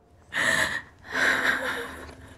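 A distressed woman, gravely ill with cancer, taking two heavy, breathy breaths: a short one and then a longer one of nearly a second.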